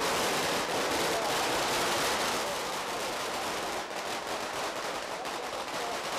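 A string of firecrackers going off in a rapid, continuous crackle of small bangs that runs steadily without a break.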